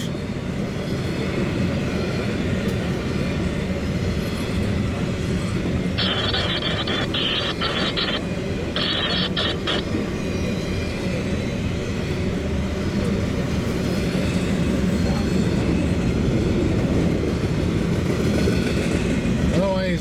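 Double-stack intermodal freight train rolling past at close range: a steady rumble of wheels on rail that grows a little louder near the end. Two short bursts of higher hiss come about six and nine seconds in.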